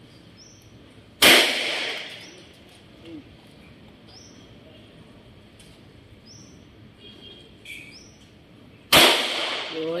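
Two handgun shots about eight seconds apart, each a sharp crack followed by about a second of echo.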